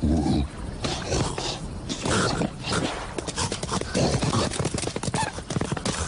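Cartoon animal character vocalizations: short growls and grunts, with quick clicking sound effects that grow denser in the second half.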